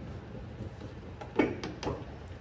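Plastic LED tail light housing being pushed into its mounting on a pickup's bed side: two short plastic knocks, one about two-thirds of the way in and one near the end, over faint room tone.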